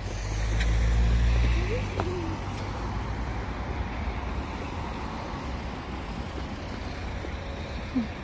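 A motor vehicle passing close by: a low rumble that swells to its loudest about a second in and fades away by two seconds, leaving steady road traffic noise.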